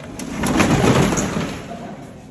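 Corrugated metal roller shutter rattling as it is rolled along its guides: a noisy rumble of about a second and a half, swelling to its loudest in the middle and then dying away.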